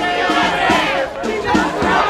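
A large crowd of marchers shouting, many voices overlapping at once with some drawn-out yells.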